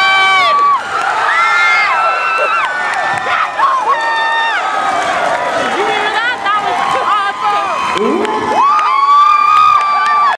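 Spectators in a gym cheering and shouting, many voices yelling at once, with one loud held shout rising near the end.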